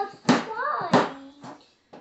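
Two sharp knife strikes through potato onto a cutting board, about a third of a second and a second in, with a child's short vocal sound between them.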